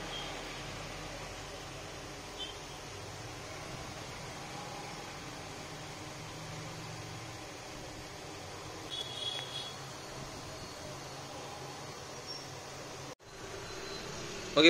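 Steady low hum and hiss of a fan-like machine, with a faint tap about two and a half seconds in and a brief cluster of faint high clicks about nine seconds in.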